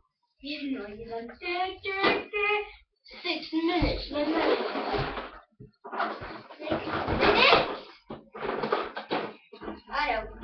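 Children talking in a small room, with rustling and a couple of low knocks from things being handled at a tabletop toy build.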